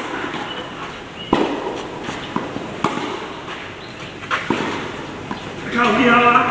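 Tennis balls struck by racquets in a short rally: three sharp hits about a second and a half apart, with a few fainter knocks between them.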